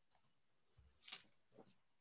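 Near silence with three faint short clicks, the clearest about a second in.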